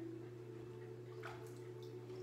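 Pool water splashing and dripping around a swimming dog, with a few small splashes about a second in, over a steady low hum.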